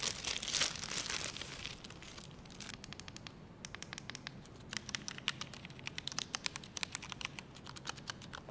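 Plastic wrap crinkling, then a run of quick, irregular key clicks as the keys of a Mountain Everest Max mechanical keyboard numpad are pressed.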